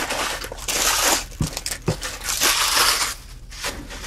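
Cardboard and wrapping of a sealed box of trading cards being torn open and crinkled: a dense rustling for about three seconds, with a couple of light knocks in the middle.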